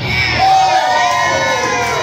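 Small crowd cheering and shouting, several voices yelling at once, some of them high-pitched.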